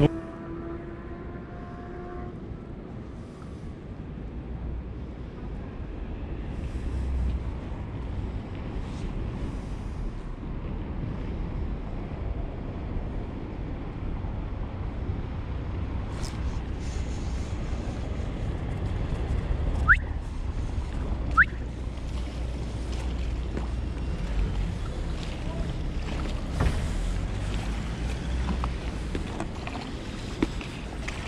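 Steady wind noise on the microphone over a low hum of town traffic. Two short rising chirps come about two-thirds of the way through.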